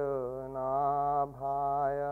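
A man chanting a mantra solo into a microphone, in long held notes on a nearly steady pitch, with short breaks between phrases.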